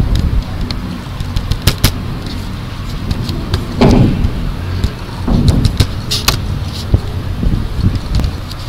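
A steady low rumble with scattered sharp clicks and knocks, and a few louder low thuds about four, five and near the end.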